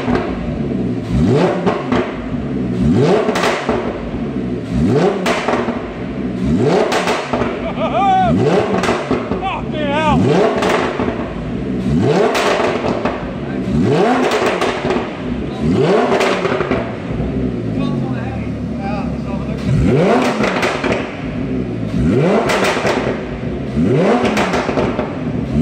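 Lamborghini Huracán's 5.2-litre V10 through a Capristo aftermarket exhaust, blipped again and again while the car stands still, each rev climbing and falling about every two seconds. Crackles and pops come out of the exhaust as the revs drop.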